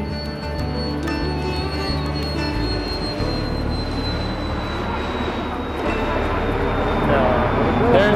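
Small jet taking off below: a high turbine whine sinks slowly in pitch over a rush of engine noise that builds through the second half, with background music over it.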